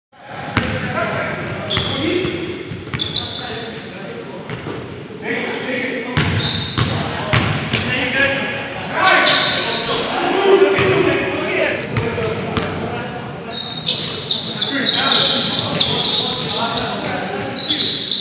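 Basketball game on a hardwood gym floor: the ball bouncing repeatedly, sneakers squeaking in short high chirps, and players calling out.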